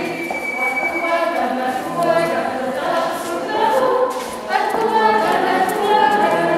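A group of voices singing a Latvian folk dance song unaccompanied, holding long notes.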